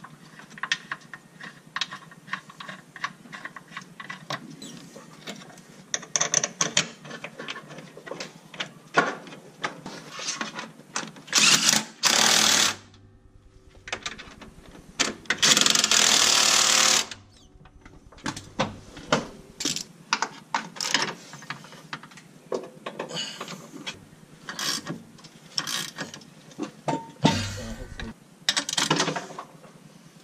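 Cordless impact driver running in two bursts, a short one and a longer one of about two seconds, driving in a suspension bolt. Around them, many light metallic clicks and clinks of hand wrenches and parts being handled.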